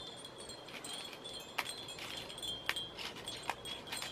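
Wind chimes ringing faintly in the breeze: a few thin sustained tones with scattered light clinks.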